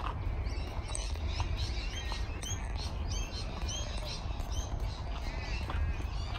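Small birds chirping in a park, many short rising-and-falling high calls repeating several times a second, over a steady low rumble.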